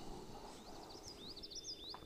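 A songbird chirping faintly, a quick run of short high chirps that starts about half a second in.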